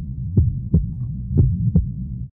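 Logo-intro sound effect: a low steady hum under slow double heartbeat thumps, two beats about a second apart.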